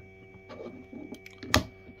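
Plastic pieces of a physical 2^4 hypercube puzzle clicking as they are turned by hand during an un-gyro move: a few light clicks, then one sharp snap about a second and a half in.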